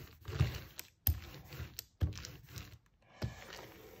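Ink brayer rolled back and forth over an inked collagraph plate, in strokes about a second apart.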